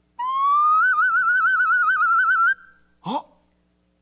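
A small recorder playing one long whistling note that slides upward and then warbles quickly before stopping after about two and a half seconds, played as an imitation for a guess-the-sound quiz.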